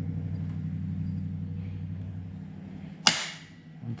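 A steady low hum, then about three seconds in a single sharp metallic click as the cam and crank gears in a bare VW engine case half are handled.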